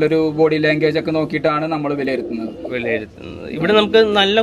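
Gaditano pouter pigeons cooing under a man's speech.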